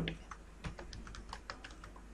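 Faint keystrokes on a computer keyboard: a quick run of about a dozen key clicks as a short shell command is typed.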